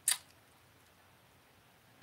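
Near silence: quiet room tone, opened by one brief soft hiss at the very start.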